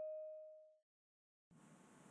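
The last of a notification-bell chime sound effect, one decaying tone that fades out within the first second. Silence follows, then faint room hiss starts near the end.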